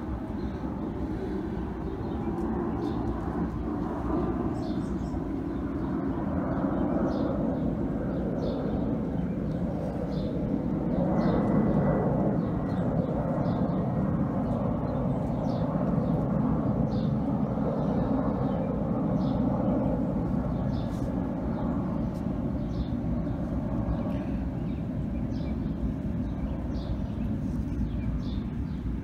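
Outdoor ambience: a steady low rumble of distant traffic that swells a little around the middle, with short, faint bird chirps scattered throughout.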